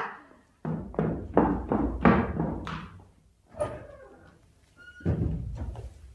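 Radio-drama sound effects of a commotion: a run of thuds and knocks over the first three seconds, then a short thin whistle and a heavier thud about five seconds in.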